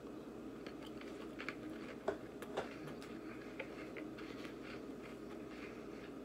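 Faint crunching of a Mini Cheddar baked cheese cracker being chewed, a scatter of short crisp crackles with the loudest about two and two and a half seconds in.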